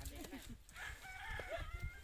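A rooster crowing once: one long held call in the second half, preceded by short faint voices.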